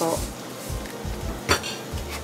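A single sharp clink of kitchenware about one and a half seconds in, over a low steady hiss from the stovetop.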